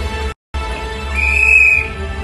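Bass-heavy entrance music played loud over a hall's sound system. It drops to silence for a moment shortly after the start, then a high held whistle-like tone sounds for under a second.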